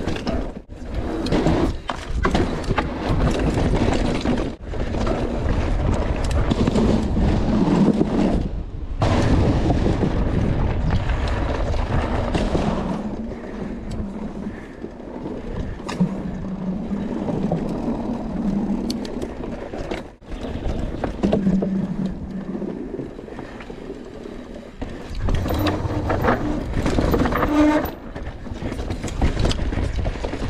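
Mountain bike ridden fast down a forest dirt trail: the rolling noise of the tyres over dirt and roots, with the bike rattling over bumps. It comes in surges that drop away briefly a few times.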